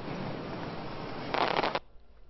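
Aerial fireworks crackling in a dense, continuous patter, with a louder flurry of crackle about one and a half seconds in that cuts off sharply.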